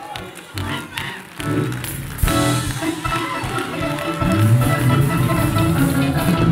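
Congregation calling out and clapping in response to the preaching, then about two seconds in a church band comes in suddenly and loudly and keeps playing, with a strong low bass under the voices.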